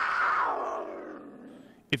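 Cougar call: one rough, noisy cry that starts suddenly, falls in pitch and fades out over nearly two seconds.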